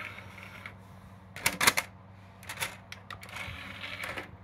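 Plastic clicks and clatter of a CD going into a desktop computer's optical drive tray and the tray closing, with the loudest clicks about a second and a half in and a few more about a second later. A low steady hum runs underneath.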